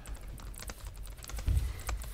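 Typing on a computer keyboard: a run of light, uneven clicks, with a dull low thump about one and a half seconds in.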